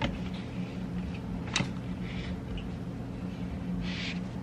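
Steady low hum under a few light clicks and taps, the sharpest about one and a half seconds in, with a brief rustle near the end.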